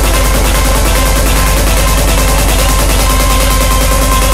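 Hard dance electronic track playing loud: a fast, even roll of beats over a held deep bass note, the build-up of the remix.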